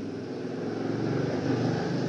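A steady low engine-like hum, a little louder through the middle.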